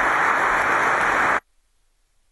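Large audience applauding, a dense steady clapping that cuts off abruptly about one and a half seconds in, followed by near silence.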